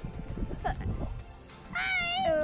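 A girl's high, wavering, drawn-out squeal near the end, after a shorter gliding squeal about a second in, over a low rumble of wind buffeting the action-camera microphone.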